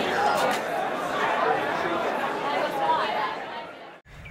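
Audience chatter: many voices talking at once in a large hall, fading out over the last second.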